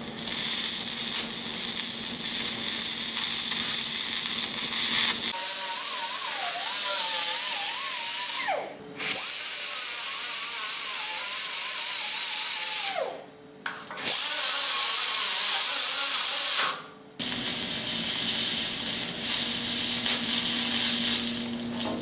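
A TIG welding arc hissing steadily on galvanized steel, then a small angle grinder run three times against the metal to grind off the galvanizing. Its whine wavers under load and falls away as it spins down each time. The welding arc hiss returns for the last few seconds.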